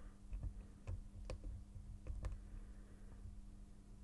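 Faint, irregular light clicks of a steel hook pick working the pins of a small brass Yale pin-tumbler padlock while it is single pin picked under tension from a tension wrench. A low steady hum runs underneath.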